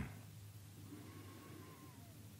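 Very quiet room tone in a pause between sentences: a low steady hum, with a faint thin tone about halfway through that holds briefly and then dips slightly.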